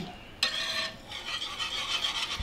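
Wire whisk stirring thick, creamy tomato gravy in a skillet. It makes a continuous scratchy rasp of quick strokes that starts about half a second in.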